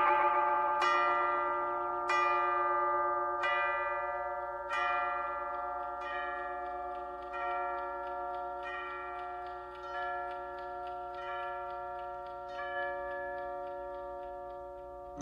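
Mantel clock bell striking twelve: evenly spaced ringing strokes about every 1.3 seconds, each sounding on under the next and slowly growing fainter.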